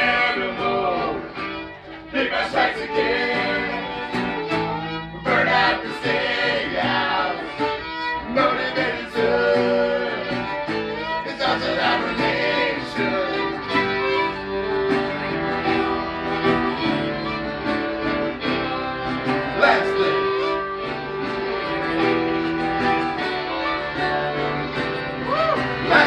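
Live acoustic folk-punk band playing: fiddle leading over strummed guitar, upright bass and accordion, with the band singing along, mostly in the first half.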